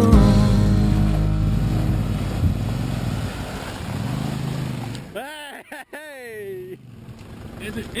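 Toyota pickup truck's engine running as it drives out of a shallow muddy ford and up the track, with the tail of background music fading out at the start. About five seconds in, a voice calls out twice, falling in pitch.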